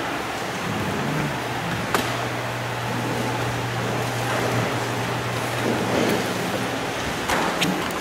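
Steady background hiss with a low hum through the middle and a couple of faint clicks.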